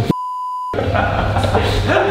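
A single steady, pure beep lasting about half a second near the start, with all other sound cut out beneath it, like a censor bleep laid in during editing. After the beep, background sound and music resume.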